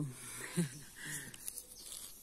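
Quiet outdoor background with faint bird calls.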